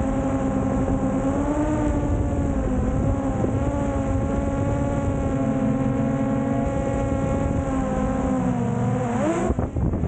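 DJI Mavic Air 2 quadcopter hovering close overhead, its four propellers giving a steady droning whine that wavers slightly in pitch. Near the end the pitch dips and climbs again as the rotors change speed.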